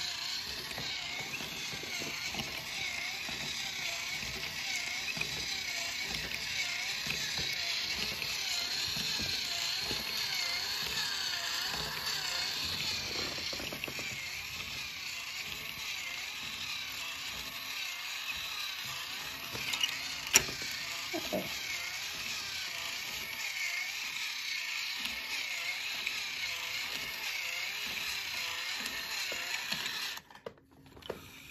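The battery-powered motor and plastic gearbox of a motorized Zoids Dark Horn model kit whirring steadily as the model walks, with one sharp click about two-thirds of the way through. The whir cuts off at the very end.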